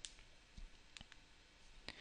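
Near silence with a few faint, short clicks spread through the pause.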